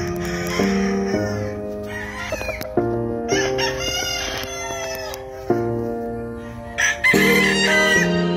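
Gamefowl rooster crowing over background music.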